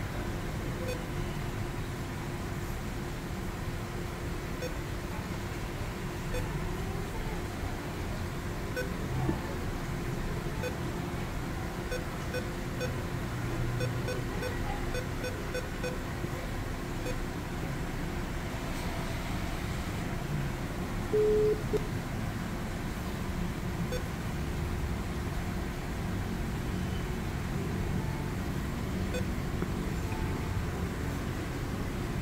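Steady low background rumble with faint scattered clicks, and one short electronic beep, a single steady tone, about two-thirds of the way through.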